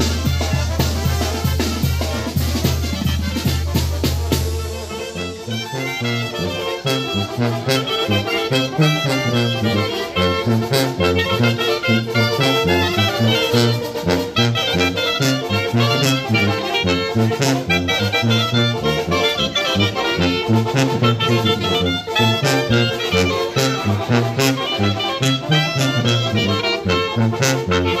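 Mexican banda brass band playing live: trombones, tuba, clarinets and drums. A long held low chord with drum strikes ends about five seconds in, and a new passage starts, with a walking tuba bass line under the brass melody.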